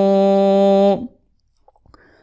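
A man's voice reciting Quranic Arabic, holding one long steady vowel, the drawn-out ending of the word "kathīrā", which stops about a second in. A pause follows.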